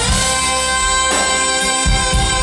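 Two saxophones playing a live duet, holding long high notes together over the backing band's bass and drums.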